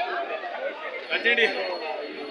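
Indistinct chatter of a crowd, many people talking at once, with one louder call about a second in.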